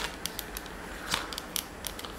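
Small plastic clicks and ticks from a Nerf Ramrod direct-plunger blaster being handled while its plunger is moved in the tube, about half a dozen faint ticks spread over two seconds.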